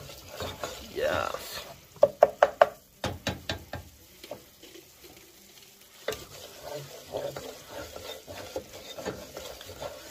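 Wooden spoon stirring and scraping a butter-and-flour roux in a saucepan, the roux sizzling faintly as it cooks. A quick run of sharp knocks about two seconds in, and a few more just after, is the loudest part.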